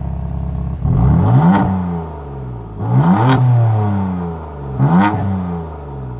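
BMW M4 Convertible's 3-litre twin-turbo inline-six heard at its quad tailpipes: idling, then revved three times about two seconds apart, each rev rising quickly and falling back to idle.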